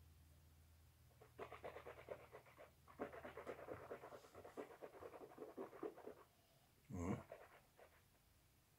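A mouthful of whisky being swished and worked around a man's mouth: faint, rapid, irregular wet smacking for about five seconds, then one short, louder mouth sound about seven seconds in.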